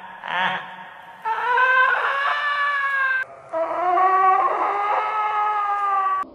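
A brief laugh, then two long held wailing tones like a horn, each about two seconds. The first rises slightly in pitch and the second slowly sinks.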